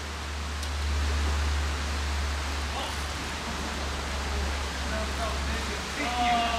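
Small mountain stream rushing steadily over rocks, with a steady low hum underneath.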